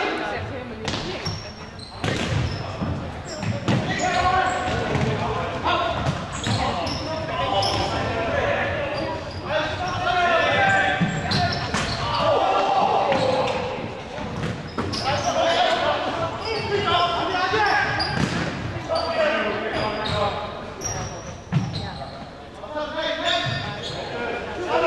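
Voices talking and calling out across an echoing sports hall, with sharp knocks of a futsal ball being kicked and bouncing on the wooden floor.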